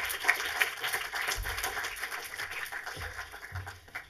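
Audience applauding in a hall: a dense patter of many hands clapping that dies away near the end, with a few low thumps.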